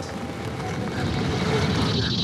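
A rushing, rumbling noise that slowly grows louder, a sound effect from a film trailer.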